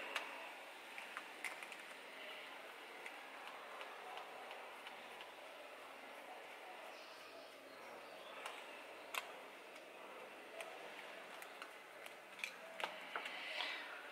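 Faint, scattered small metallic clicks and scrapes of a screwdriver working in a PWK carburettor body as the power jet is unscrewed.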